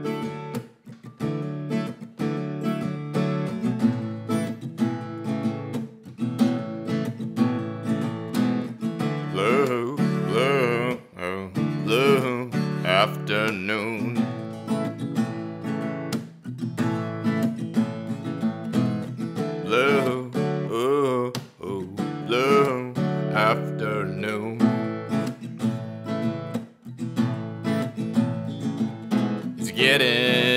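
Acoustic guitar strummed in a steady rhythm of chords. A wordless, wavering vocal line rises over it twice, around the middle.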